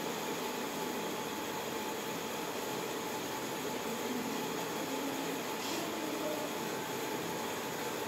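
Steady background noise of a room: an even hiss with a faint steady tone in it and no clear voices.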